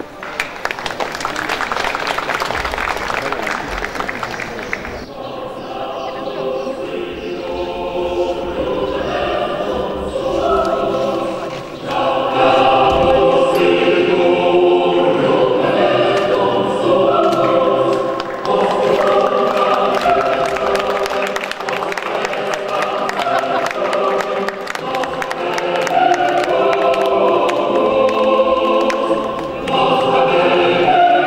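Audience applause that breaks off abruptly about five seconds in, followed by choral music with sustained, shifting chords.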